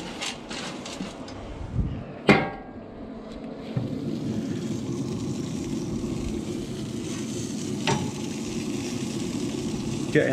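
A metal clank with a short ring about two seconds in as the grill's lid is handled, then a steady sizzle from the turkey cooking on the open grill, with a few lighter clicks.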